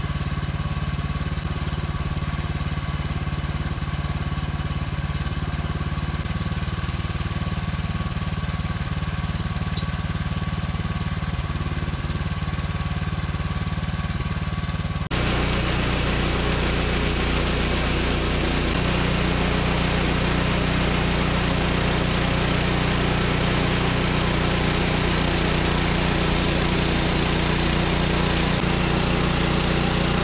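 The 14 hp engine of a Woodland Mills HM126 portable band sawmill running steadily. About halfway through the sound changes abruptly and gets louder as the band saw cuts through a cherry log.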